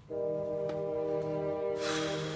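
Dramatic background-music sting: a sustained chord of several held notes comes in suddenly and holds steady, with a burst of hiss swelling near the end.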